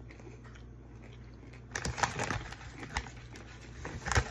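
Chewing a crunchy bite of sweet pepper stuffed with cream cheese and Takis chips: a few crisp crunches starting a little under two seconds in, over a low steady hum.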